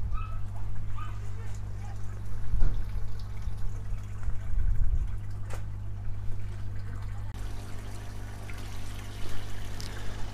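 Water trickling and splashing in an aquaponics system, over a steady low hum.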